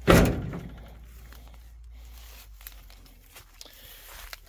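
A single thunk from the old truck's steel cab door as a hand pushes on it, ringing out over about half a second, then faint rustling and small knocks.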